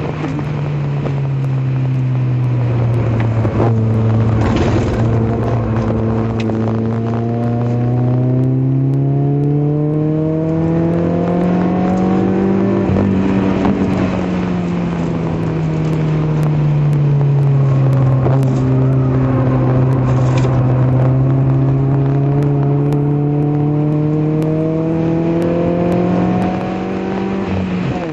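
Citroën Saxo VTS's 1.6-litre four-cylinder engine at full throttle, heard from inside the cabin on track. The engine note drops with an upshift at the start, then climbs steadily for about ten seconds. It falls away as the car slows about halfway through, builds again, and drops with another upshift at the very end.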